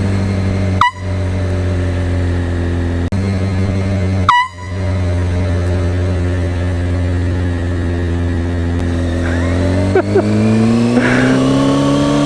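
Two short, loud blasts from a handheld canned air horn, about a second in and again about four seconds in, over a Kawasaki ZX-6R inline-four engine idling steadily. Near the end the engine's pitch rises as the bike pulls away.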